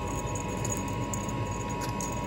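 Battery-powered motorized cat toy running: a steady motor whine with faint, irregular ticks from its mechanism, over a low steady hum.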